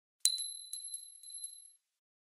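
A metal coin dropping onto a hard surface: one sharp strike with a clear high ring, then about six smaller bounces as it settles, the ring dying away after about a second and a half.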